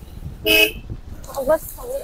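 A single short vehicle horn honk about half a second in, over the low rumble of riding on a motorbike.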